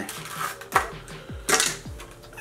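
Clicks and rustles of trading cards and their plastic packaging being taken out of a tin by hand, with two sharper clatters in the second half. Background music with a steady kick-drum beat runs underneath.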